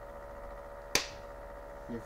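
A single sharp click about a second in, over a steady hum.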